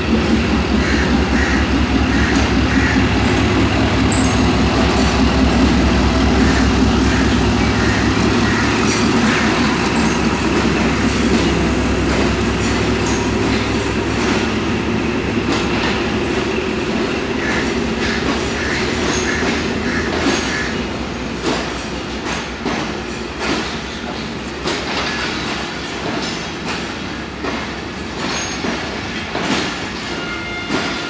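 A Pakistan Railways diesel locomotive hauling a departing express past the platform, its engine humming deep and steady. The hum is loudest in the first half and fades after about fifteen seconds. The passenger coaches then roll by with irregular wheel clicks over the rail joints.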